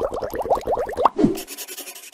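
Cartoon sound effect for an animated logo: a fast run of short rising bubbly blips, about seven a second. A little after a second in they end with a quick falling swoop, followed by a high shimmering hiss.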